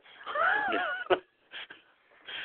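A person's drawn-out vocal sound with a wavering pitch, about a second long, followed by a short clipped sound.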